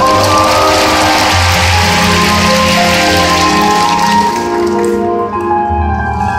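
Free-skate program music over arena loudspeakers, with a burst of audience applause that starts at once and dies away about four and a half seconds in.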